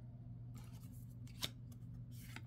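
Tarot cards being handled and laid onto a pile, with one sharp click about one and a half seconds in, over a faint steady hum.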